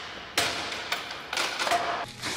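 Fight sound effects from a film soundtrack: about four hard blows in quick succession, each a sharp thud with a short ringing tail.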